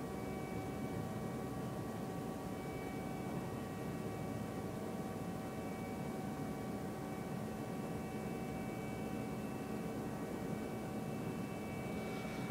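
A steady mechanical hum with a few faint, constant whining tones over a low rumble and hiss.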